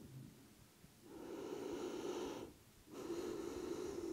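A woman's slow, deep breaths, faint: one breath starting about a second in and a second one starting near the three-second mark, with a short pause between them.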